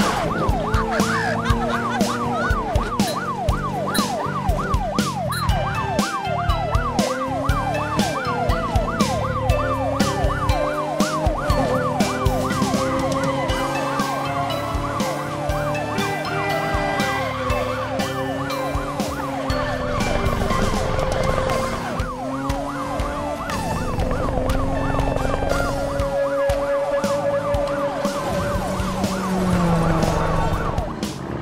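A cartoon police car siren in a fast, repeating rising-and-falling yelp, plainest in the first ten seconds or so, over background music with a steady beat.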